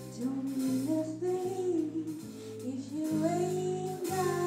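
Female jazz vocalist singing with a live band, her voice gliding between notes over a bass line that steps beneath her.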